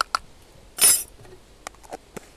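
Metal measuring spoons clinking against a plastic tub of potassium bromide powder, with one short loud scrape a little before the middle and a few light clicks near the end.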